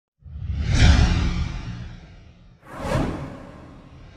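Whoosh sound effects for an animated logo intro: a deep swoosh with a heavy low end swells and fades over the first two seconds, then a second, shorter swoosh sweeps through about two and a half seconds in.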